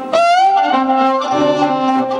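Violin playing an Arabic classical melody with the ensemble: it opens with a quick upward slide into a held note, then moves on in sustained notes, and low bass notes join a little past halfway.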